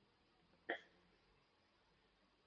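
Near silence with one brief throat sound, a hiccup-like catch, less than a second in.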